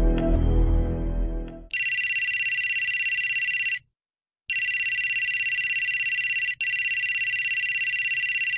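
Telephone ringing with a fast electronic trill: one ring of about two seconds, a short pause, then a longer ring of about four seconds, signalling an incoming call. Dramatic music fades out in the first second and a half, just before the ringing starts.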